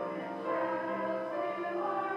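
Church organ playing slow, sustained chords, the held notes shifting from one chord to the next.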